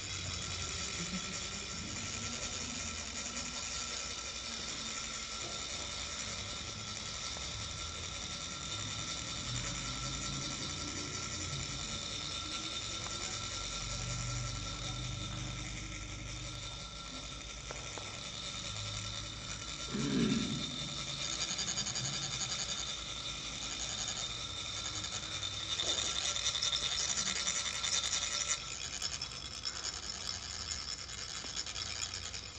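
Metal chak-pur funnels being rasped with a metal rod to trickle coloured sand onto a sand mandala: a continuous fine grating, stronger near the end. A short low sound cuts in about two-thirds of the way through.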